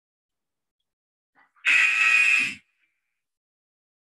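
Workout interval timer buzzer sounding once, about one and a half seconds in: a steady buzzing tone for about a second that cuts off abruptly. It signals the end of the counted-down interval and the start of the next.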